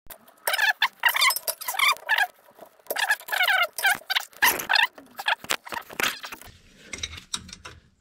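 Squeaks and clicks of a wrench working the aluminium AN fitting of a braided oil line, gloved hand and tool rubbing on the metal, as the line is loosened. Two runs of quick high squeaks come in the first five seconds, then sparser clicks.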